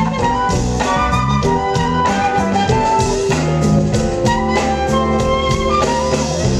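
Live smooth-jazz band: a flute playing the melody over drum kit and bass in a laid-back, funky groove with a steady beat.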